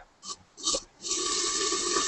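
Dumplings frying in a covered skillet, sizzling and steaming hard right after water has been poured into the hot oil. The steady hiss comes in about a second in.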